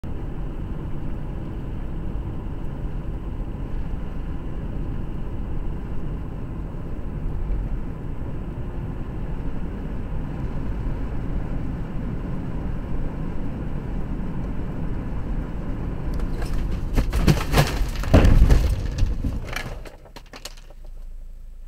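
Car driving, with steady road and engine noise heard from inside the cabin. Near the end a burst of sharp knocks and thuds, the heaviest thud a moment later, as the car strikes a deer; the road noise then drops away.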